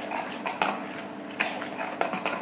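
A spoon stirring runny jalebi batter in a plastic bowl, with irregular clicks and scrapes against the bowl's sides.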